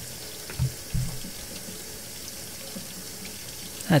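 Hot water from a sink faucet running steadily over an upturned glass flask and splashing into a steel sink. Two brief low thumps come about half a second and one second in.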